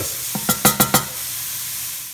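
Diced onions, bell pepper and celery sizzling in grease in a cast iron pot while a wooden spoon stirs them. A quick run of scrapes and knocks against the pot comes in the first second, then a steady sizzle.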